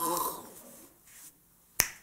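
A man lets out a short groan at the start. About two seconds in comes a single sharp finger snap.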